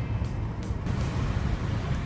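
Steady low drone of engine and road noise inside a moving car's cabin.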